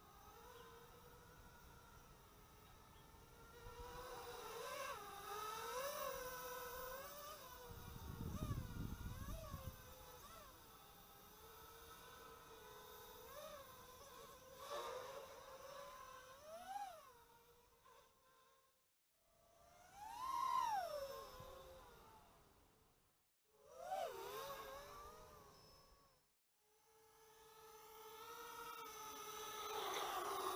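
Small quadcopter's 2400kv brushless motors and propellers whining in flight, the pitch rising and falling with throttle. The whine cuts out three times in the last third as the throttle is chopped, swelling loudest in between.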